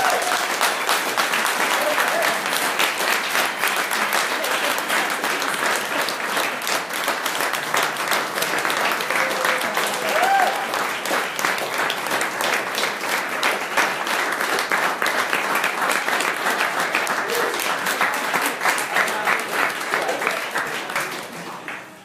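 Audience applauding steadily, a dense clapping that fades away near the end, with a few brief voices calling out over it.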